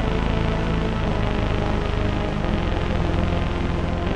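Studio Electronics Boomstar 4075 analog synthesizer playing a dark, sustained low drone through a Strymon BigSky reverb pedal, its notes washed into a dense reverb tail. The low notes shift about at the end.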